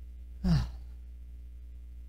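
A short sigh about half a second in: one brief breathy exhale whose voice falls in pitch. A steady low hum runs underneath.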